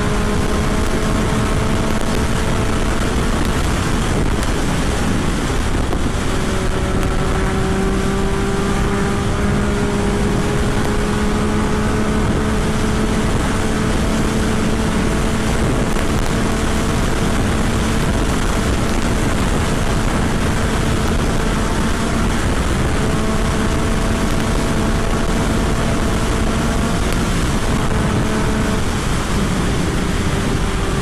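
Yamaha FZ-09's three-cylinder engine pulling steadily at highway speed, its note holding or climbing slowly as the throttle is held, with a few short dips. Heavy wind rush on the microphone sounds over it.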